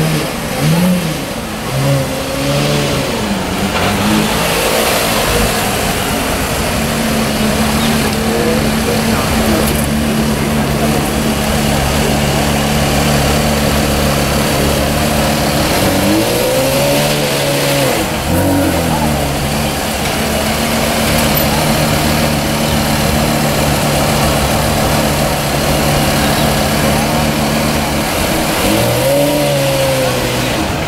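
Porsche Carrera GT's 5.7-litre V10 idling steadily, with short rev blips in the first few seconds, again about halfway through and once more near the end.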